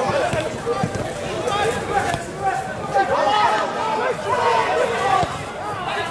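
Several voices talking and calling over one another, players on the pitch and spectators at the touchline, with no single speaker standing out.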